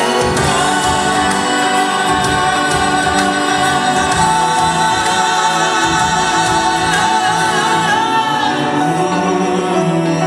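Two male singers performing a song live through microphones over amplified backing music, with long held notes.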